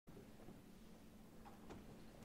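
Near silence: faint room tone with two faint short clicks about one and a half seconds in.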